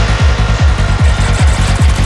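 Trance music from a DJ mix: a steady four-on-the-floor kick drum at a little over two beats a second, a pulsing bassline filling the gaps between kicks, and hi-hats ticking above.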